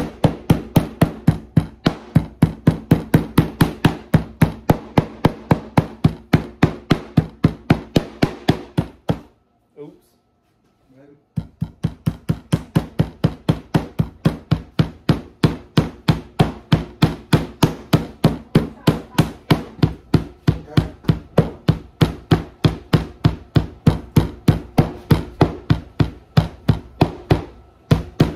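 Metal meat-tenderizing mallet pounding seasoned venison steaks on a wooden cutting board, fast even blows about four a second, to tenderize the meat and work the seasoning in. The pounding stops for about two seconds a third of the way in, then resumes.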